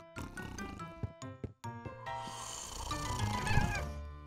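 Cartoon background music with short plucked notes, then about two seconds in a cat growling and hissing over it, fading out near the end.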